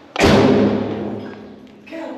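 A single loud thump about a fifth of a second in, fading away over about a second and a half.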